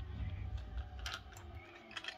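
A few light clicks of plastic Lego pieces and minifigures being handled on a tabletop, the clearest about a second in and near the end, over a low rumble that fades after the first second and a half.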